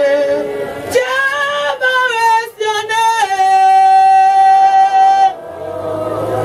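A woman singing solo into a microphone: a few short, sliding phrases, then one long high note held for about two seconds that breaks off near the end.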